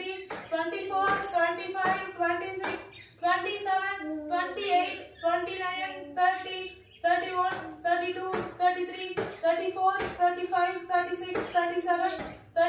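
A woman's voice counting out exercise repetitions aloud in a steady, even rhythm, with a few sharp clicks among the words.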